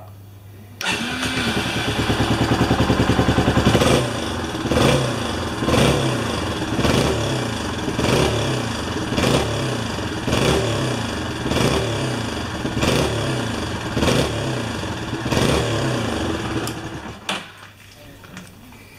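Yamaha Serow 250's single-cylinder engine starting up, running at idle, then blipped on the throttle about ten times, roughly once a second, before being shut off near the end.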